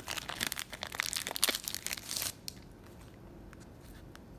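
Clear plastic wrapping crinkling as it is pulled off a stack of trading cards, for about two seconds. After that only a few light clicks as the cards are handled.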